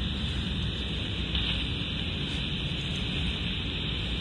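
Steady hiss of shortwave band noise from the speaker of a Quansheng UV-K5 handheld receiving single sideband on the 20 m band, with no station audible between transmissions.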